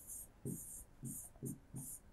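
Pen strokes scratching and tapping on an interactive whiteboard as words are written by hand, about five short strokes in a row.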